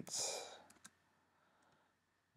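A short breath out close to the microphone, followed by two keystrokes on a computer keyboard as a word of code is typed.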